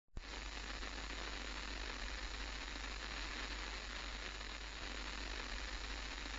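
A steady hiss with no tones and a low hum beneath it, opening with a short click.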